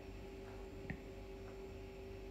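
Quiet background hum with a faint steady tone, and one small click about a second in.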